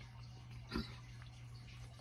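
Quiet room with a steady low hum, broken about three-quarters of a second in by one short, nasal 'mm' from a man tasting food.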